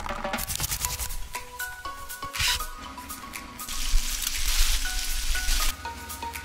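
Light background music with short plinking notes over close-miked cooking sounds: garlic cloves dropping and clicking onto a wooden cutting board at the start, then a steady hiss for about two seconds in the second half.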